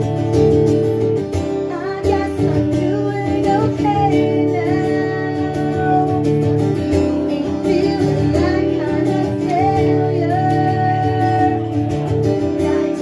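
A woman singing live to her own strummed acoustic guitar; the strumming runs steadily, and her voice comes in about two seconds in.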